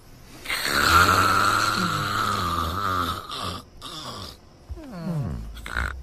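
Loud, exaggerated comic snoring: one long snore of about three seconds, then several shorter snorts that slide down in pitch.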